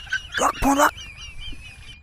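A short, honking animal call about half a second in, over a rapid, high, warbling bird-like twitter.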